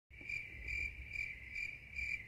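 A cricket chirping at a steady pace, about five chirps in two seconds, over a faint low hum.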